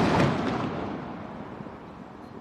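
Fading rumble of a blank salute shot from the Noonday Gun, a 3-pounder Hotchkiss naval gun. The blast's noise dies away steadily over about two seconds.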